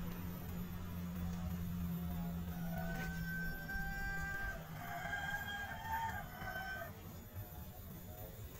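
A rooster crowing, a long drawn-out crow starting about two and a half seconds in and trailing off near the end, over a low steady hum that fades out about halfway through.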